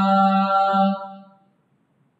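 A man chanting Arabic in a melodic recitation style, the opening formula of a Friday sermon, holding a long note that fades out a little over a second in, followed by near silence.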